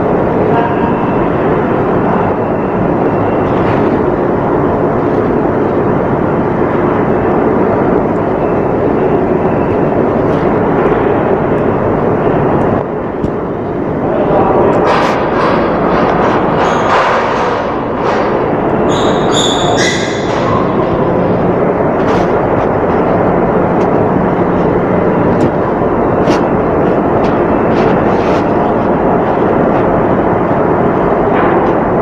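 Ship's pump-room machinery running with a loud, steady roar and a constant low hum. About halfway through, a short run of clicks and scrapes sounds over it.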